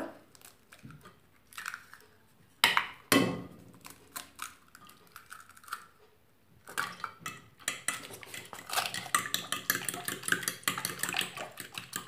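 Eggs cracked on the rim of a ceramic bowl: two sharp knocks about three seconds in. From about halfway, a metal utensil beats the eggs into the milk mixture, with rapid clicking against the ceramic bowl.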